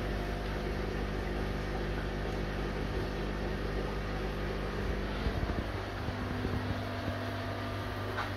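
Steady electric hum of running aquarium equipment, an air pump and filter, with a low buzzing tone and its overtones. The hum shifts in pitch pattern about six seconds in, with a few light clicks after.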